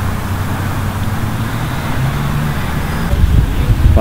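Traffic rumble from a busy road, with a vehicle engine's low hum that rises in pitch about halfway through. Wind buffets the microphone near the end.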